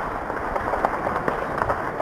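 Distant gunfire in a fast, irregular crackle of many sharp cracks over a rough, muffled noise, without a break.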